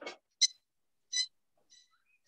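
A pet bird chirping: short, high whistled chirps, two clear ones about half a second and a second in and a faint one near the end.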